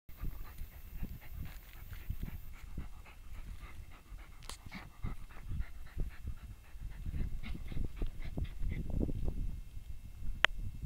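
A small dog digging into a rodent burrow with its head in the hole: paws scraping the earth in short irregular bursts, with panting and snuffling into the hole.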